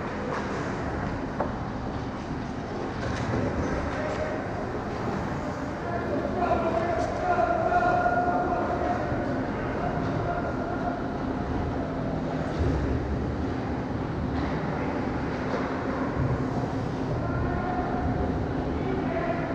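Ice hockey game sound in an indoor rink: a steady rumble of skates on ice and arena noise, with a low hum underneath and players' voices calling out, one call held briefly around the middle.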